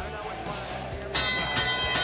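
Background music, then about a second in a bright chime of many steady ringing tones starts suddenly and holds. It is the robotics field's sound cue, marking the match stage as the driver-station blinders go up.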